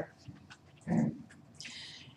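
A brief wordless sound from a man's voice about a second in, followed by a short breath.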